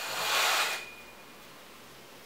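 A curtain drawn along its rail: a brief scraping rush of fabric and sliding rings with a faint squeal in it, cutting off sharply less than a second in.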